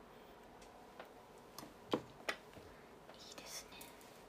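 Faint sounds against quiet room tone: a few soft clicks, the sharpest two close together about two seconds in, and a brief breathy whisper a little after three seconds.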